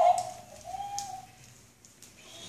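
A baby's soft cooing: a brief high vocal sound at the start, then a gentle hum that rises slightly and falls away about a second in.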